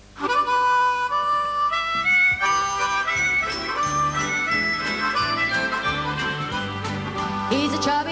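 Harmonica sounds a couple of short held notes. A band with a bouncing bass line then joins in, playing the jaunty intro to a Christmas song.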